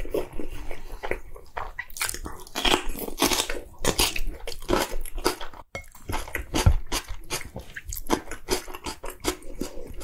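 Close-miked chewing of a spoonful of soy-marinated salmon and rice, with many quick wet smacks and clicks of the mouth.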